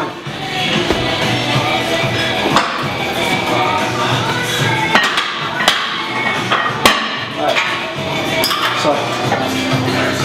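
Iron weight plates knocking against a barbell and each other as they are loaded on: several sharp metallic clanks, over steady background music.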